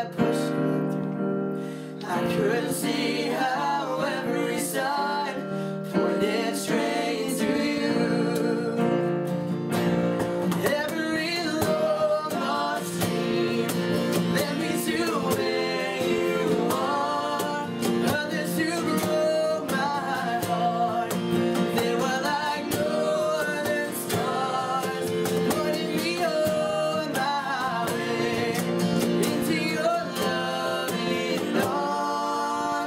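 Acoustic country ballad performed live by young male voices singing together. Two strummed acoustic guitars, a keyboard and a cajon accompany them.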